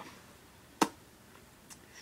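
A single short, sharp click just under a second in, followed by a couple of faint ticks, against quiet room tone.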